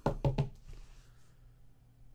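Rigid plastic card top loaders clicking and knocking together as they are handled: about four quick, sharp clicks in the first half second.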